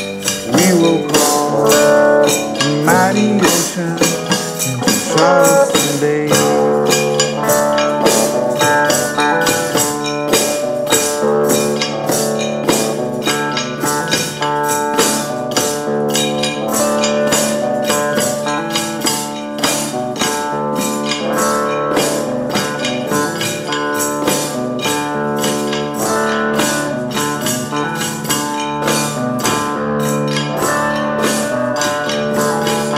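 Instrumental passage of a live acoustic song: a hand-struck tambourine keeps a steady, even beat under strummed guitar chords.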